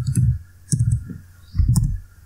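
Computer keyboard typing: keystrokes in three short bursts.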